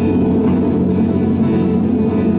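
A live band playing an instrumental passage with guitar, steady and loud, with no singing.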